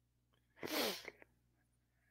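A short breathy burst from a man close to a headset's boom microphone, an audible breath or sigh, about half a second long, followed by a small mouth click.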